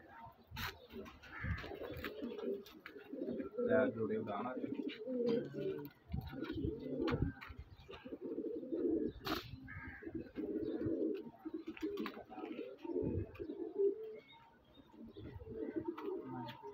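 A flock of domestic teddy pigeons cooing, with overlapping low, pulsing coos through most of the stretch. Two sharp clicks stand out, one near the start and one about halfway through.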